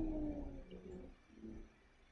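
A person's voice holding one drawn-out syllable that slides slowly down in pitch and fades about half a second in, followed by faint, brief voice sounds.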